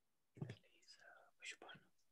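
Faint, whispery speech: a few short, barely audible words from a person's voice.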